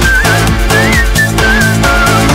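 Up-tempo house dance music at 132 beats per minute, with a steady driving beat and bass. Over it a high, whistle-like lead melody glides up and down in short phrases.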